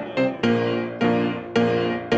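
Piano playing a hymn accompaniment, striking chords about twice a second, each one ringing and fading before the next.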